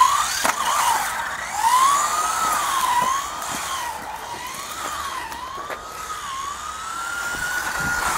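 Electric motor and drivetrain of a Huan Qi RC mini buggy whining as it drives. The pitch rises and falls in uneven waves about once a second as the throttle changes, and climbs near the end.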